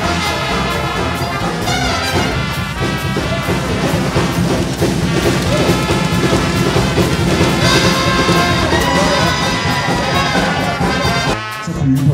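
A traditional jazz band playing a swinging tune led by brass horns over bass and drums; the music stops abruptly near the end.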